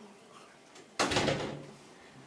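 A door closing: a sudden thud about a second in that dies away over about half a second.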